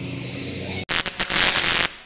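A steady low hum for the first second, cut off sharply, then a loud static-like crackling noise burst from a logo sting that fades away at the end.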